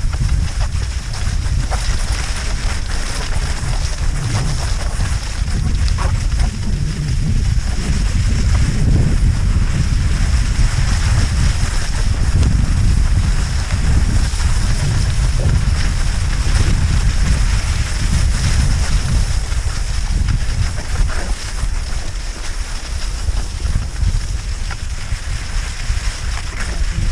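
Wind buffeting the microphone in a steady low rumble while cross-country skiing, over a continuous hiss of skis gliding on packed snow.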